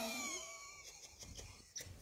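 A woman's breathy vocal sound, falling in pitch and fading out within the first half second, then faint rustling with a couple of small clicks near the end.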